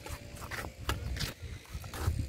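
Footsteps crunching on dry dirt and gravel, about three sharp steps a second, over a low rumble.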